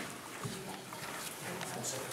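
Faint, indistinct voices and room noise in a large hall, with a few soft knocks.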